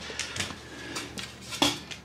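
A few light knocks and rubs of a loose cedar board being handled against a plywood wall, the loudest knock about one and a half seconds in.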